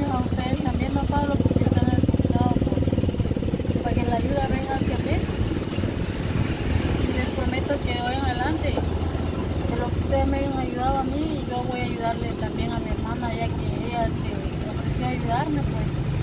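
A motor vehicle's engine running steadily, loudest in the first few seconds and easing off after about ten seconds, under quiet voices.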